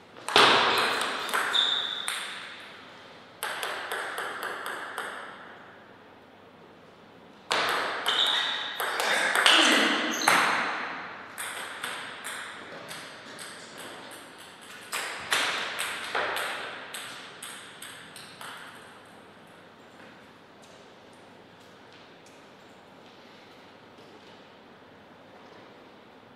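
Table tennis ball clicking off the rackets and the table in quick exchanges: three short rallies start near the beginning, at about three and a half seconds and at about seven and a half seconds. After that the clicks thin out and die away by about eighteen seconds in.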